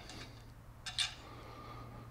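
Two light clicks about a second in as an RF Elements horn antenna and its plastic parts are handled, over a faint steady low hum.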